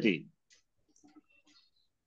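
A few faint, scattered clicks of computer keyboard keys as a word is typed.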